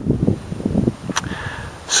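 Wind rumbling on the microphone, with a single sharp click about a second in and a short hiss near the end.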